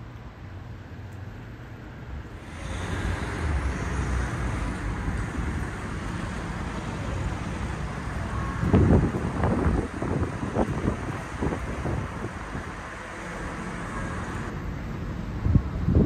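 Street traffic noise that swells about two and a half seconds in and eases off near the end. A cluster of wind gusts buffets the phone's microphone in the middle.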